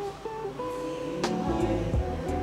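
Background music with a plucked guitar melody, its notes stepping from one pitch to the next, and a sharp percussive hit about a second in.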